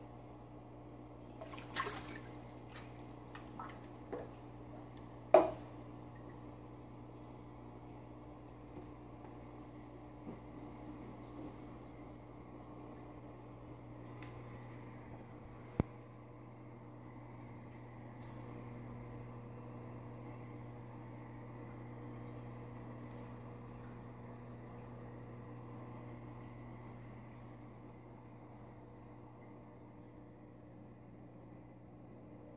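Steady low hum of running aquarium equipment (powerhead and filter) with water trickling and dripping. A few sharp knocks come in the first six seconds, the loudest about five seconds in, and another single click near sixteen seconds.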